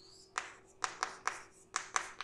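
Chalk writing on a chalkboard: a series of about six short, sharp taps as the chalk strikes the board with each stroke.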